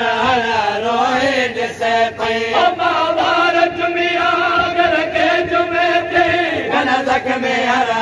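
Men's voices chanting a Sindhi noha together, drawing out long held notes, with hand strikes of matam chest-beating keeping time underneath.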